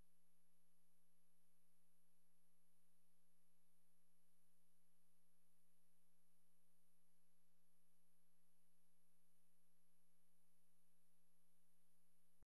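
Near silence: a faint, steady electronic hum made of a low tone with a few fainter higher tones, unchanging and with no other events.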